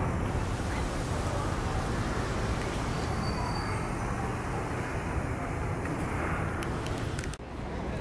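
Steady outdoor background noise with a low hum, like distant traffic, which drops away abruptly near the end.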